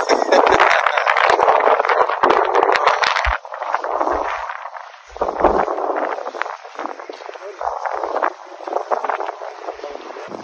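Rustling and crackling close to the phone's microphone as it rubs and shifts against a nylon puffer jacket and fur-trimmed hood. It is loudest and densest for the first three seconds or so, then comes and goes.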